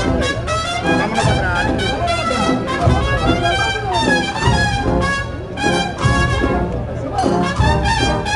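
Agrupación musical, a Holy Week marching band of cornets, brass and drums, playing a processional march: several sustained brass lines over a steady drum beat.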